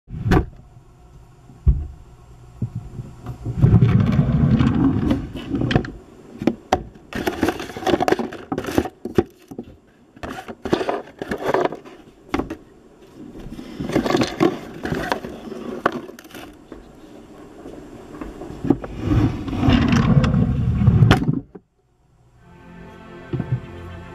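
Handling noise close to the microphone: irregular rubbing, bumping and scraping with sharp knocks and two heavy rumbling stretches, as if the recording device is being held and covered. It cuts off suddenly just before the end.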